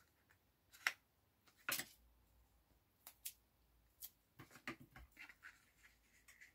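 Faint handling sounds of double-sided tape being torn off in short pieces and pressed inside the rim of a card box: two brief, sharper sounds about one and two seconds in, then a run of small ticks and rustles in the second half.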